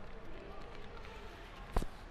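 Faint background murmur in a large hall, then a single sharp knock near the end, from a person climbing into the steel cab of a backhoe loader.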